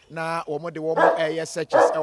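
A police detection dog barking, mixed with a man talking.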